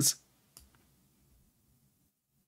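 Near silence after a man's voice stops at the very start, broken only by one faint click about half a second in.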